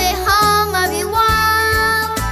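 A young girl singing into a microphone over an instrumental backing track, holding a long note in the second half.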